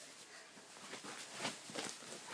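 Faint rustling and a few soft handling noises of someone moving about on the floor and picking something up, most of them about a second in.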